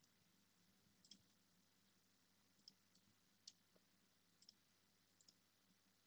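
Faint computer mouse clicks, about seven or eight spread irregularly over a few seconds, as faces are picked one by one in CAD software, over near silence with a faint low hum.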